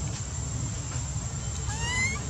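A baby macaque giving one short, rising, whimpering cry near the end, over a steady low rumble.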